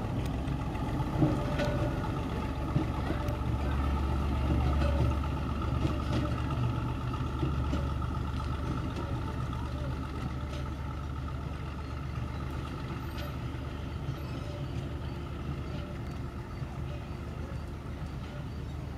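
Diesel engine of a small 2 ft gauge locomotive running with a low, steady rumble as it moves slowly away along the track, the sound fading gradually, with a few clicks near the start.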